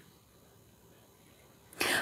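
Near silence, then near the end a short, sharp intake of breath by a woman just before she starts speaking.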